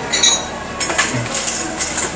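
Light clinks and clicks of crockery over a steady hiss, from a self-service coffee machine where an espresso has just been poured.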